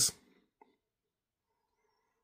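Near silence: room tone with one faint click about half a second in.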